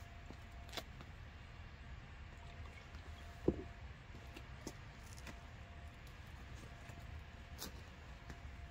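Quiet outdoor background with a steady low rumble. About halfway through comes one sharp knock, a plastic bottle of isopropyl alcohol set down on concrete, with a few soft clicks around it.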